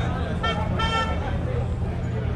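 Vehicle horn honking twice in short beeps, the second slightly longer.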